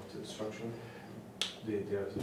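Faint, off-microphone voices in a small room, with one sharp click about one and a half seconds in; a voice grows clearer near the end.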